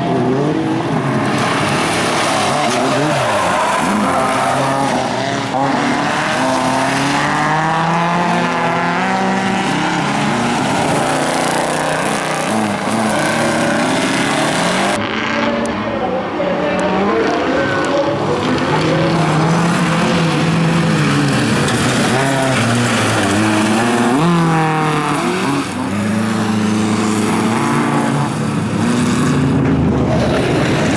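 Several bilcross race cars' engines revving hard and easing off as they race, their pitch climbing and dropping again and again through gear changes. There is an abrupt change in the sound about halfway in.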